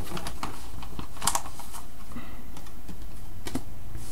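Trading cards and plastic binder sleeve pages being handled: scattered light clicks, taps and crinkles, the sharpest about a second in, over a steady low hum.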